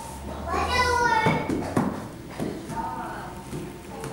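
A young child's high voice calling out without clear words, followed by a few footsteps about half a second apart.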